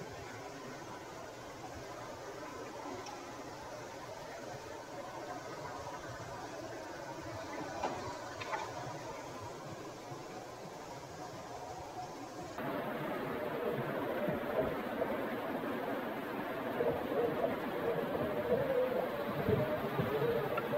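Axial SCX6 Honcho RC crawler working over rocks in a shallow creek: the small electric motor and drivetrain whir over the steady rush of flowing water. About twelve and a half seconds in the sound jumps louder and closer.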